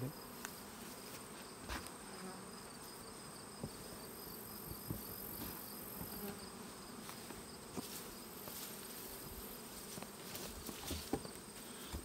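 Honey bees humming around an open hive, with a steady high-pitched insect trill behind. A few faint knocks come from the wooden hive boxes and frames being handled.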